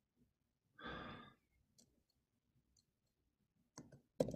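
A man's single sigh, a breathy exhale of about half a second about a second in, heard close on the microphone against near silence. A faint click follows near the end.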